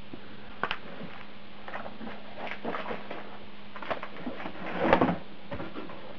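Scattered rustles and light knocks of a paper leaflet and a cardboard box being handled, the loudest about five seconds in.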